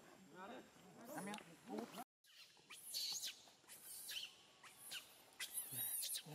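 Baby macaque crying in distress. Wavering calls break off suddenly about two seconds in, then a string of short, high squeals, each falling in pitch.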